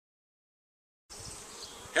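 Silence, then about a second in a low, steady buzzing of honey bees flying around their hives begins.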